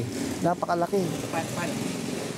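Steady street traffic noise, with quiet, indistinct speech over it.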